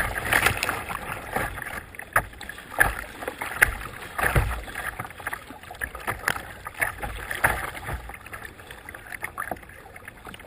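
Choppy river water splashing and slapping against a kayak's bow right at the microphone, with irregular sharp slaps and low thumps over a steady rush of water.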